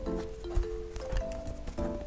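Background music with a simple melody of single held notes, over irregular taps, clicks and crinkles of tape-covered paper cut-outs being pressed and smoothed down with fingertips.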